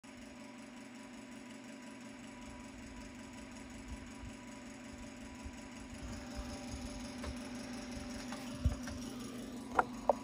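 A steady, slightly wavering low mechanical hum, with a low bump a little before the end and a couple of sharp clicks right at the end as the phone is handled.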